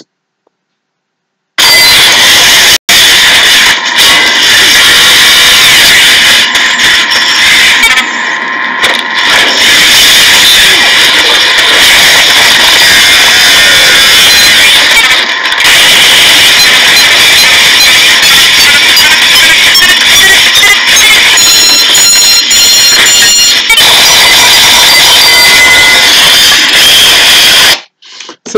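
Soundtrack of a military robot video playing from a phone, heavily overloaded into a harsh, continuous distorted noise with no clear speech. It starts after about a second and a half of silence and drops out briefly a few times.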